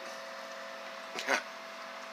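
Quiet background hum with a thin steady tone, broken by one short spoken word just over a second in.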